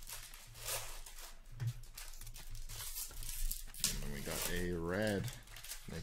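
Trading-card packs being torn open and cards handled: plastic wrappers crinkle and rustle in irregular bursts. A short drawn-out vocal sound comes near the end.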